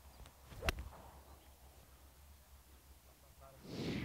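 A six iron striking a golf ball: one sharp, crisp click about two-thirds of a second in, over faint outdoor background.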